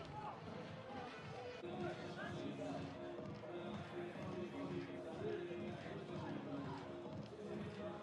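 Stadium ambience at a beach soccer match: music playing over the noise of crowd voices, with no single loud event.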